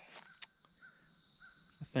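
Faint woodland ambience in a pause of talk: a bird's short calls repeated several times, over a steady high insect drone, with one light click about half a second in.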